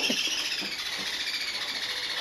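A baby yellow-sided green-cheeked conure making a steady, high, fast-fluttering chatter that drifts slightly down in pitch while its head is scratched. The owner reads it as the bird being a little nervous.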